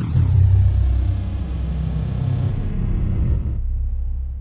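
A deep, steady rumble sound effect of the kind laid under an animated end card. It starts suddenly with a faint high tone gliding down at the onset, then holds steady.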